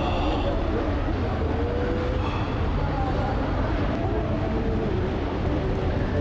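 A steady low rumble, with faint wavering voices above it.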